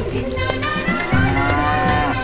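A cow mooing once, one long moo in the second half, over background music.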